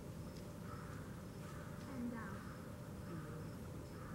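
Faint outdoor ambience: a low steady rumble with short high chirps repeating at an even pace, and a few brief calls.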